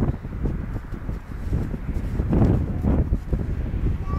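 Wind buffeting the camera microphone in an uneven low rumble, louder for a moment about two and a half seconds in.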